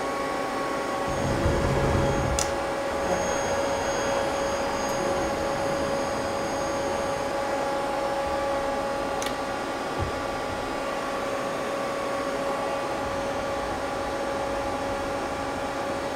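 Mazak CNC lathe humming steadily with a few fixed whining tones while its turret is moved in to bring a boring bar up to the face of the workpiece. A low rumble rises from about one to three seconds in, and there are a few faint clicks.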